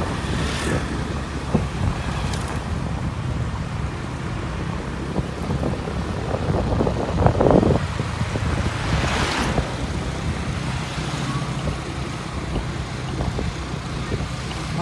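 Motor scooter engine running steadily while riding along a road, with wind buffeting the microphone. Brief louder rushes of noise come a little past the middle.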